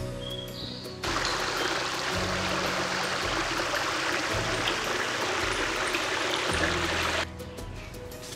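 Small forest brook rushing and splashing over stones, loud and steady, cutting in about a second in and out again abruptly about a second before the end, over background music.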